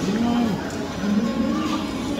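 A man hums a long, appreciative "mmm" while chewing food, twice rising and falling in pitch, over background music.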